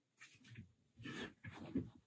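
Faint, short breathy puffs from a person, coming in soft bursts about a second in and again near the end.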